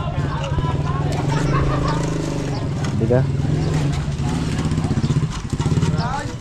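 A small engine running steadily with a low, evenly pulsing hum, with voices over it.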